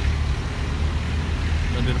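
Steady low rumble of a car's engine and tyres, heard from inside the cabin as the car moves along.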